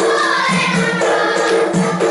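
A group of girls singing in unison, with sharp claps or percussion strokes keeping the rhythm of a kneeling group dance.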